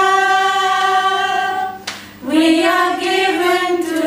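A small group of women singing a hymn together, unaccompanied. They hold a long note, take a short breath about two seconds in, then sing a second sustained phrase.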